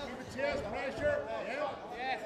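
Indistinct men's voices talking and calling out, with no clear words and no distinct impacts.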